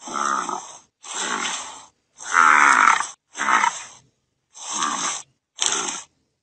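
American bison grunting: six low, rough calls of under a second each, coming about once a second.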